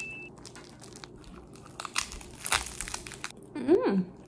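Plastic film wrapper of an onigiri rice ball being pulled open, crinkling and crackling, loudest about two and a half seconds in. Near the end a short hummed 'mmm'.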